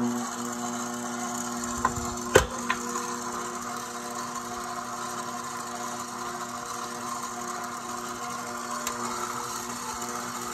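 KitchenAid stand mixer motor starting up and running steadily on its lowest speed, its dough hook turning through flour and wet ingredients. A few sharp knocks about two seconds in, the middle one the loudest.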